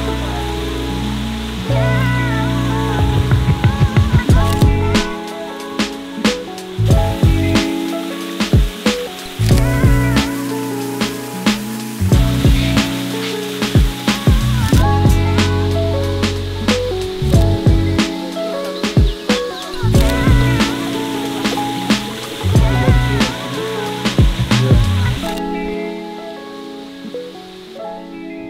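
Background music with a beat: a melody over bass and percussion, dropping in level near the end.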